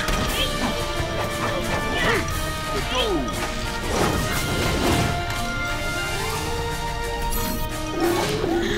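Cartoon scuffle sound effects: repeated crashes and whacks over a music score, with sliding vocal cries between the hits.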